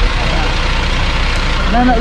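Fire engine idling with a steady low rumble.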